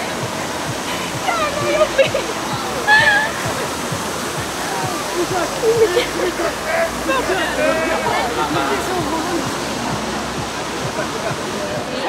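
Steady rushing hiss of a large fountain jet spraying up and falling back into a river, with voices talking over it.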